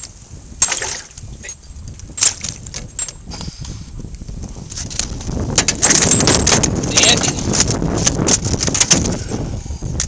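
Small northern pike being lifted from the water and flopping in an aluminium boat: scattered knocks at first, then from about halfway a dense run of knocks and rattles against the hull that eases off near the end.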